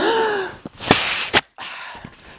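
A 260 twisting balloon being inflated almost all the way: two loud rushes of air, the first with a faint falling squeal, the second shorter, about a second in.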